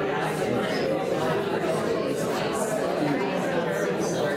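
Many overlapping conversations in a large room, a steady hubbub of people talking in pairs at the same time.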